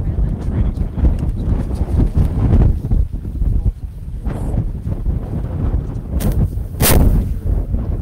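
Wind buffeting the microphone, a rough low rumble throughout, with two sharp knocks near the end, the second the loudest.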